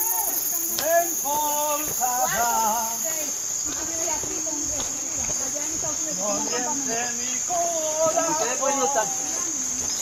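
A steady, high-pitched chorus of crickets, with people's voices talking indistinctly in snatches, about a second in and again from about six seconds.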